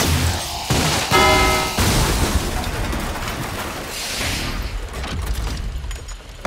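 Sci-fi laser gun firing a sustained blast that shatters a glass display case, with a short pitched chord about a second in. Deep booming rumble under dramatic music follows.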